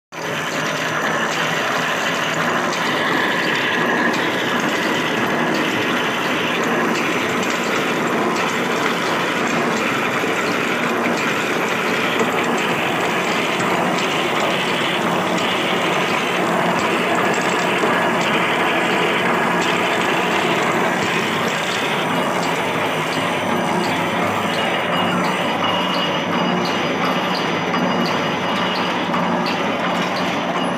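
Automatic barbed-wire making machine running steadily: a loud, continuous clatter of gears and the wire-twisting mechanism. A regular ticking about twice a second comes through near the end.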